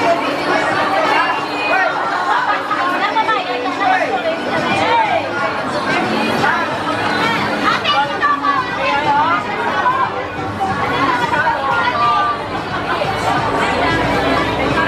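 Several people talking at once close by, with overlapping conversations and a crowd's babble behind them.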